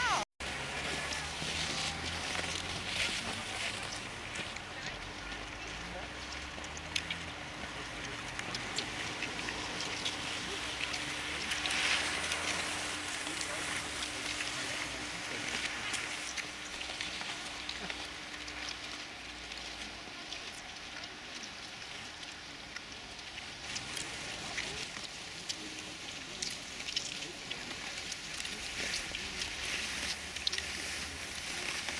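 Outdoor ambience with indistinct voices in the background and a faint steady hum through the middle stretch.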